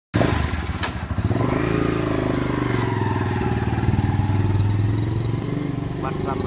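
An engine running close by at a steady pitch, which rises about a second in and then holds. There is a single click just under a second in.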